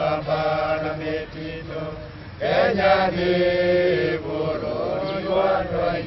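Voices singing a slow chant in long held notes, with a short lull about two seconds in before the chant resumes.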